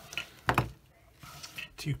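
Two quick sharp taps about half a second in as a plastic model-kit wing part is handled and set down on a cutting mat, followed by a few faint ticks.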